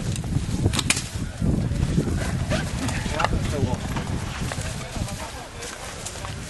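Indistinct voices calling and talking outdoors, with a couple of sharp knocks about a second in.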